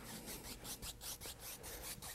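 A large natural-bristle paint brush being worked lightly back and forth over a wet oil-painted canvas, blending a cloud. It makes a faint, quick run of soft scratchy strokes, about six a second.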